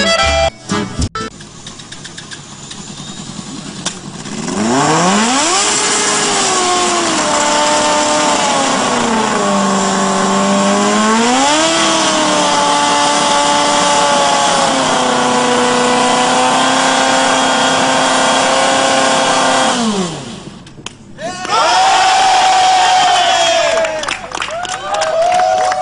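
Formula Student race car engine revving: after a few seconds of low hiss it climbs to high revs, holds, dips and climbs again, then drops off about twenty seconds in. After a short lull it rises again at higher revs near the end.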